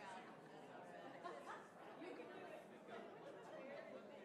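Faint, indistinct chatter of many people talking at once in a large room, with no single voice standing out.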